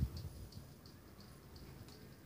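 Faint, regular ticking, about three ticks a second, with a soft low bump at the very start.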